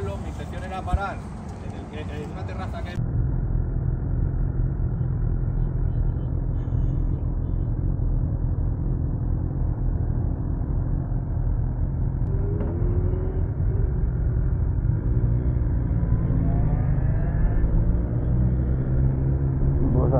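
Brief talk among a group of people, then after about three seconds a BMW S1000XR's inline-four engine running steadily, heard muffled from the bike's own mounted camera. In the last few seconds its pitch rises as the bike pulls away.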